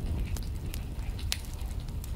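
Wood fire burning in a fireplace, crackling with scattered small pops and one sharper pop about two-thirds of the way through, over a low steady rumble.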